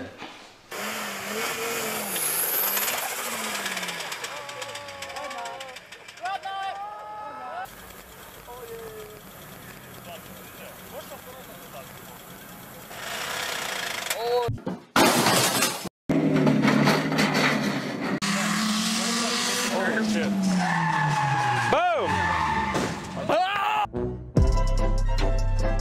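A car engine running and revving under people's voices, with a sudden break in the sound about two-thirds of the way through, after which the engine and voices come back louder.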